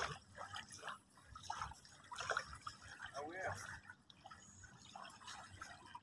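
Faint water dripping and trickling, with faint voices in the background.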